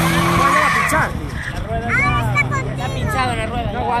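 A drift car's engine held at high revs with tyre squeal as it slides, both dropping away about a second in. Spectators then whoop and shout while the engine runs on lower.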